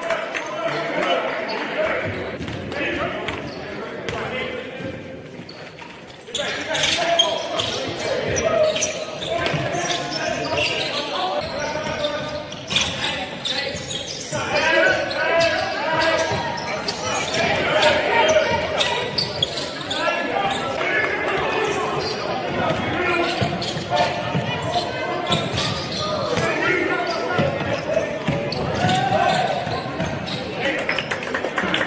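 Live basketball game sound in a large hall: a basketball bouncing on a hardwood court amid players' and bench voices calling out. The sound drops briefly and jumps back abruptly about six seconds in.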